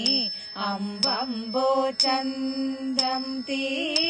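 Women singing a Malayalam kaikottikali song in a slow, chant-like melody, holding and bending long notes, with a sharp beat keeping time about once a second.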